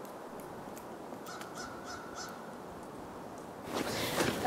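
A bird calls faintly three times in quick succession, about a second and a half in, over a quiet outdoor background. Near the end a louder noise comes in.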